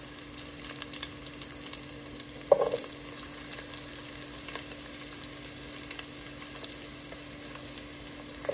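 Chopped onion and garlic frying in hot oil in a pot, a steady sizzle with fine crackles throughout. A brief louder sound stands out about two and a half seconds in.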